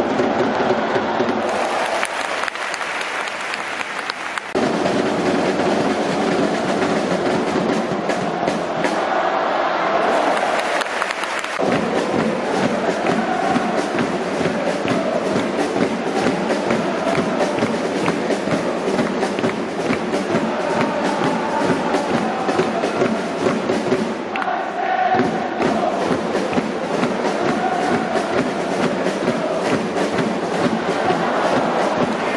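A stadium crowd of football supporters chanting a melodic, sung cheer over steady drumming. The chant breaks off and picks up again abruptly a few times.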